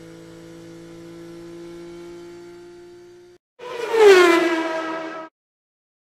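Racing car engine droning at a steady pitch for about three seconds. After a brief break comes a loud racing car fly-by whose pitch drops as it passes, which cuts off suddenly.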